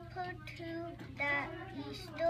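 A young girl's voice reading aloud slowly, in drawn-out, sing-song syllables with short pauses between them.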